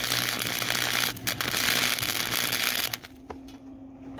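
Arc welding on a steel exhaust pipe joint: a steady crackling sizzle, broken briefly just after a second in, that stops about three seconds in as the arc is broken. A steady low hum runs underneath.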